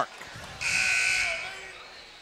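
Gym scoreboard horn sounding once for about a second, starting about half a second in: the scorer's signal for a substitution.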